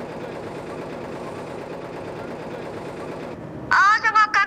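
Multi-head computerized embroidery machines running, their needles stitching with a fast, steady clatter that stops just before the end.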